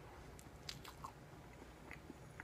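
Faint mouth sounds of a person biting into and chewing a soft, strawberry-filled sweet, with a few soft wet clicks.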